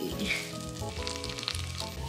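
Halved gifflar, small cinnamon rolls, frying in melted butter in a stainless steel frying pan, with a steady sizzle.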